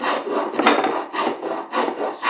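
A four-in-hand rasp filing a hickory axe handle in quick, repeated strokes, taking down the high spots where the axe head bit into the wood so the head will seat.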